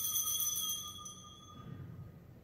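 Altar bell ringing on after a strike and fading away about one and a half seconds in, rung for the elevation of the chalice at the consecration.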